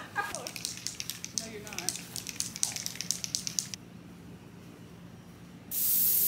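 A brief laugh, then a few seconds of faint, irregular crackling. Near the end an aerosol can of silly string starts spraying with a loud, steady hiss.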